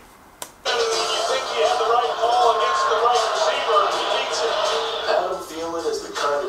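Audio of the NFL highlight video being played: a voice with background music, starting under a second in after a brief quieter moment with a click.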